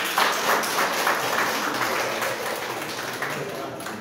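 Audience applauding, strongest at first and tapering off toward the end.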